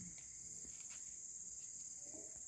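Crickets chirping in a steady, high-pitched night chorus, with a few faint clicks.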